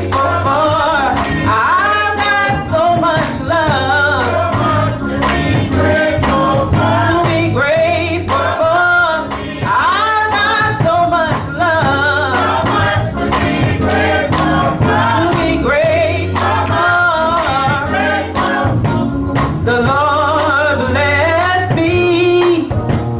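Gospel music: a choir singing over a steady beat and bass line.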